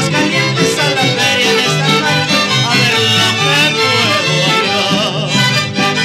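Mariachi recording in an instrumental passage: violins carry a wavering melody over a stepping bass line of alternating notes, with no singing.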